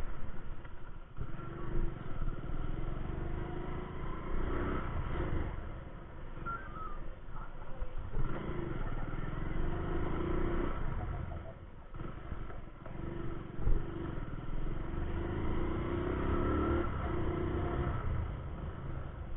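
Hero Honda Passion Plus single-cylinder four-stroke motorcycle engine running on the move, its note climbing several times as the bike picks up speed.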